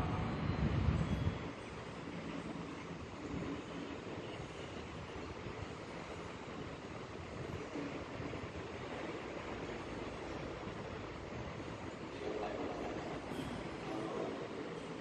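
Monks' group chanting ends about a second in, then a steady rushing hall background noise with the pedestal electric fans running.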